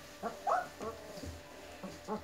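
Puppies nearly three weeks old whimpering and squealing in short high calls, about four of them, the loudest about half a second in.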